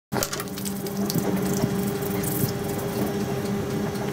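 Hands rubbing together with foam hand sanitiser, a steady wet rubbing with small squelches, over a faint steady hum.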